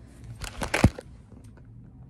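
Brief rustling handling noise with a few sharp clicks, the loudest just before a second in.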